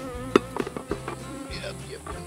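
Honeybees buzzing around an opened hive. Over the buzzing come one sharp, loud click about a third of a second in and a few lighter clicks after it, as a metal hive tool pries the wooden hive box loose.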